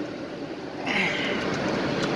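Semi truck's diesel engine idling steadily, heard from inside the cab, with a brief hiss about a second in.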